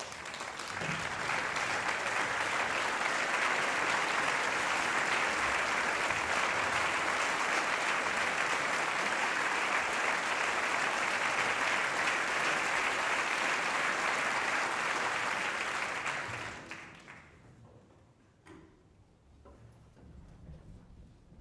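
Audience applauding, a dense steady clapping that builds within the first second, holds for about fifteen seconds, then dies away.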